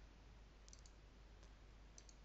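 Faint computer mouse clicks over near-silent room tone: a quick run of three clicks less than a second in, then single clicks past the middle and at the end.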